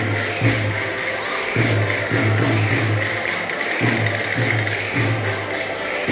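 Portuguese folk dance music for a cana verde, with a steady jingling percussion beat over a pulsing low bass line.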